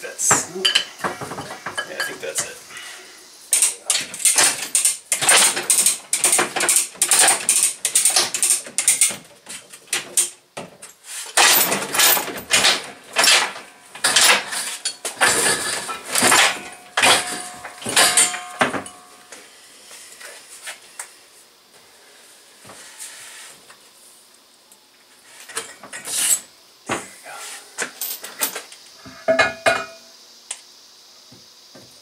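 Rapid metallic clinking and ratcheting of a wrench and steel parts as a backhoe hydraulic cylinder is taken apart on a metal workbench. The clatter is dense for the first two-thirds, then thins to occasional knocks.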